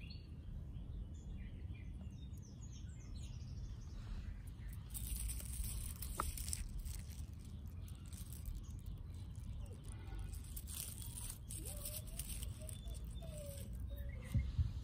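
Outdoor ambience: birds chirping now and then over a steady low rumble, with stretches of rustling noise around the middle.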